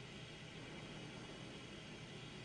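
Faint, steady background hiss with no distinct sound events.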